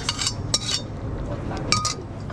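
Metal tongs scraping and clinking against a stainless steel frying pan while pasta is served out of it onto a plate, with a few sharp clinks, the loudest near the end.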